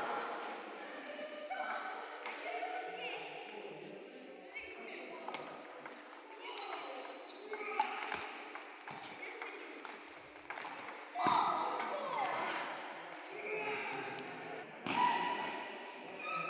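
Table tennis balls clicking off rubber paddles and the table in quick rallies at more than one table, with voices talking.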